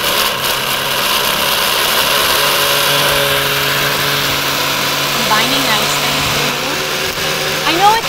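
Countertop blender running at a steady pitch, puréeing a smoothie of yogurt, spinach and romaine lettuce.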